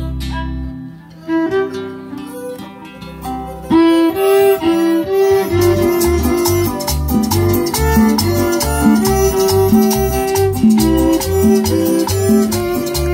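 Live conjunto band playing a church chorus: a violin carries the melody over strummed guitars. It starts softly with held notes, and about four seconds in the full band comes in with a steady, repeating bass beat.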